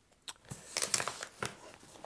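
A camera lens being pushed into a padded camera backpack: soft rustling and scuffing of the nylon-covered foam dividers with a few small clicks, starting a moment in and busiest about a second in.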